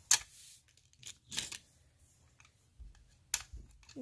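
Small plastic toy accessories being handled and set into a plastic toy suitcase: scattered light clicks and rustles, with sharp clicks just after the start and a little after three seconds in.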